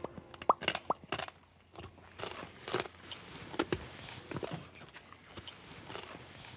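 A person chewing something crunchy: irregular crunches, with two short rising squeaks about half a second and a second in.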